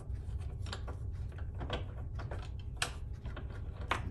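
Irregular light metallic clicks and taps as a stainless nut and backing plate are handled and the nut is threaded by hand onto an eye bolt, over a steady low hum.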